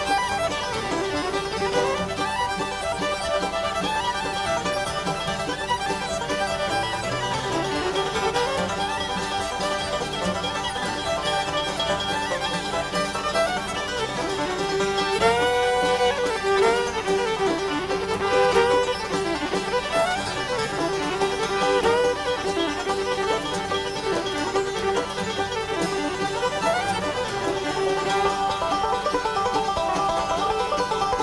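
Live bluegrass string band playing a fiddle tune: the fiddle leads over banjo, mandolin and acoustic guitar backing.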